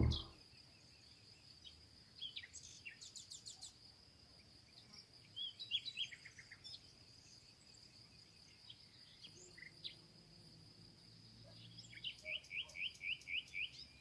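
Faint outdoor birdsong: scattered short chirps and trills, with a quick run of about six chirps near the end, over a steady high thin tone.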